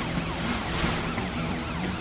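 Cartoon police car siren wailing in quick rising-and-falling sweeps, about three or four a second.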